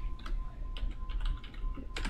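Typing on a computer keyboard: a quick, uneven run of keystroke clicks as a short word is typed.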